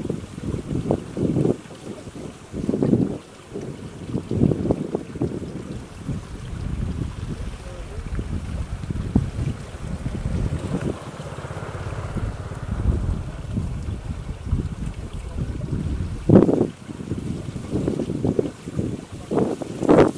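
Wind buffeting the microphone in irregular low gusts, loudest about two seconds in and again after about sixteen seconds.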